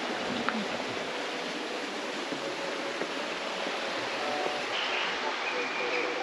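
Steady rush of a fast-flowing river running over rocks: an even hiss of water with no breaks.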